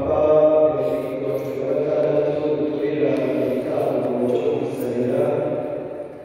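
Slow sung religious chant: voices hold one long, drawn-out phrase that fades away near the end.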